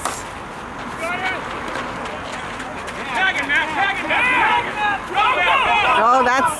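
A softball bat hits the pitched ball once, a short sharp crack right at the start. Several people's voices follow, calling out from about halfway through.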